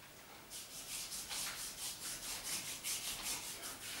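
Hands rubbing briskly over bare skin in quick, even strokes, about four a second, starting about half a second in: a vigorous massage rub to get the blood flowing.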